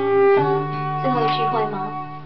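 Live pop song played on acoustic guitar, with a woman singing a held, wordless vocal line into a microphone over it.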